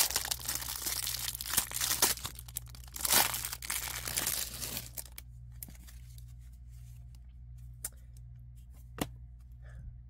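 Clear plastic wrapper around a stack of baseball cards being torn open and crinkled, loudest about three seconds in. After about five seconds it dies down to a few soft clicks as the bare stack of cards is handled.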